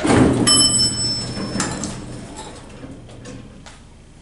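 Older Lancaster hydraulic elevator's arrival bell ringing once, a clear tone held for about a second, just after the call button is pressed. The car doors slide open with a fading rumble.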